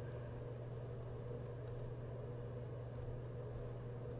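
A steady low hum with a faint even hiss under it, and nothing else happening: the background noise of the recording setup.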